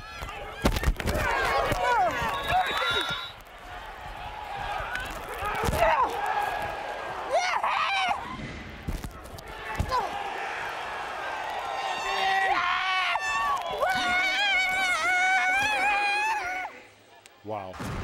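On-field sound from a football player's wireless mic: women players' voices shouting and calling, with several sharp thuds of contact. A long, wavering held yell comes near the end.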